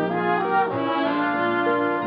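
Short instrumental passage of a popular song's orchestral accompaniment, with brass playing held chords that shift a couple of times between sung lines.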